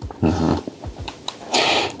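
A man's short low vocal sound, then a breathy noise just before he speaks again.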